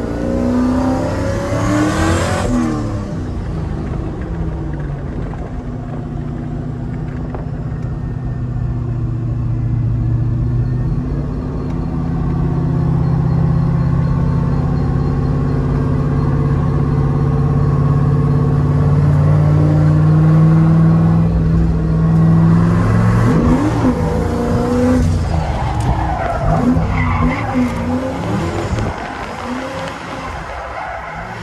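Turbo Chevrolet Silverado drift truck's engine heard from inside the cab while driving: a steady drone that slowly climbs in pitch through the middle, with quick revs rising and falling near the start and again in the last several seconds as the driver works the manual shifter.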